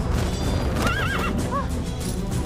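A horse whinnying, one quavering call that begins almost a second in and trails off near the end, over background music.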